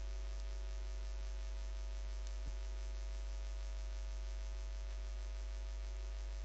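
Steady electrical mains hum, with one faint click about two and a half seconds in.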